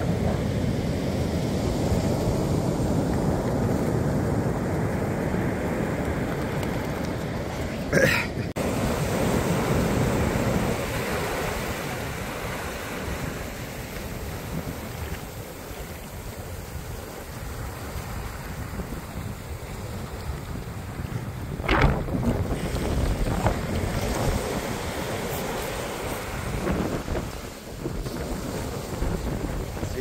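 Ocean surf washing up the beach, with wind buffeting the microphone. A single sharp knock comes about two-thirds of the way through.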